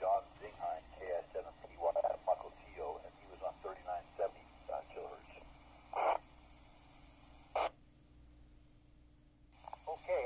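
A ham operator's voice coming through a QYT KT-WP12 mobile radio's speaker, thin and band-limited like received radio audio. After about five seconds the talk breaks off into two short isolated bursts, the second like a squelch tail as the transmission ends, followed by about two seconds of quiet.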